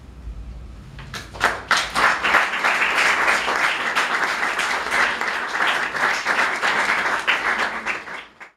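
Audience applauding: a few scattered claps about a second in swell quickly into steady, dense applause.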